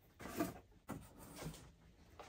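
Cardboard shoe box being lifted and handled to open it: a few short scrapes and rustles of cardboard.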